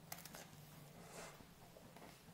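Faint crunching of a wafer ice-cream cone being bitten and chewed, with a couple of soft crackles near the start, over a low steady hum.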